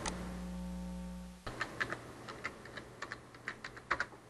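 Typing on a computer keyboard: an irregular run of about a dozen key clicks. Before it, a low steady hum cuts off suddenly about one and a half seconds in.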